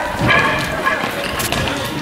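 A man's brief shout near the start, then street noise with a single sharp crack about one and a half seconds in.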